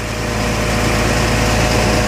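Truck engine running steadily, driving the hydraulics of a truck-mounted crane while a control lever is pulled and the crane arm moves its grab bucket.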